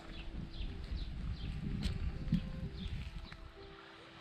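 Footsteps of a person walking along a stream bank, heavy thuds about three a second with brushing through vegetation, picked up close by a body-worn camera; they stop near the end. Faint high chirps repeat above them.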